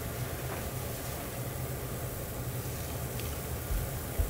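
A large stainless-steel pot of kombu dashi at a vigorous boil: a steady, low bubbling rumble. A soft low thump comes near the end.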